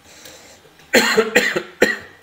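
A man coughing, three sharp coughs in quick succession starting about halfway in.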